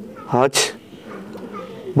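A man's voice saying a single word, then a pause with only faint background sound before he speaks again.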